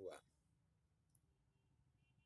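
Near silence after a man's spoken word ends, with one faint short click about a second in.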